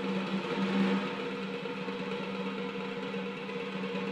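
Horanewa, the Sri Lankan double-reed shawm, holding one soft, steady low note with no drumming.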